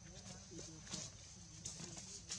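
Faint outdoor ambience: a steady high-pitched hiss, a few sharp clicks, and faint voices in the background.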